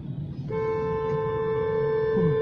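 A car horn held in one long, steady honk that starts about half a second in, over street noise.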